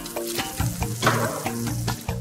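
An egg frying in a steel pan, sizzling, with the sizzle swelling sharply about a second in, over background music.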